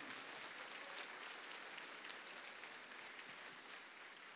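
Faint crowd noise of a large congregation in a big hall, with light scattered clapping.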